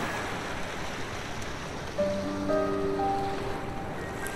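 Waves washing on a rocky shore, heard as a steady rushing noise, under soft background music whose held notes come in about halfway through.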